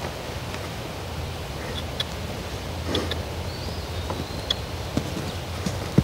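Quiet outdoor ambience: a steady low rumble with a few faint scattered clicks and rustles, and a faint thin high whistle about midway.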